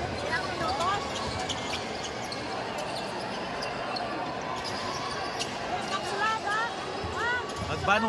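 A basketball being dribbled on a hardwood gym floor, bouncing repeatedly over the chatter and calls of a crowd in the hall.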